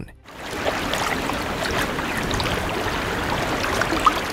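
Steady rush of moving water, splashing and lapping, starting just after the beginning and holding at an even level.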